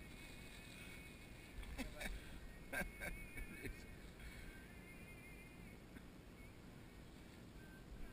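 Faint outdoor ambience with a thin, wavering whistle-like tone. A few knocks and handling noises come about two and three seconds in.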